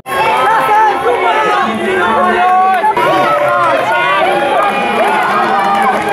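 A crowd of people talking and calling out over one another, many voices at once with no single speaker standing out.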